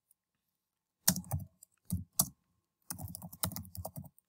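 Computer keyboard typing: an irregular run of keystrokes that starts about a second in and continues in quick clusters.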